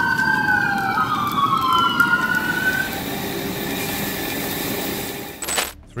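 Emergency vehicle siren wailing, two sliding tones crossing each other, fading out about halfway through, over a steady rushing noise. A brief burst of hiss comes just before the end.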